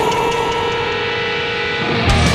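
Break in a heavy rock song: the bass and drums drop out and a steady held tone rings on alone, until the full band crashes back in at the very end.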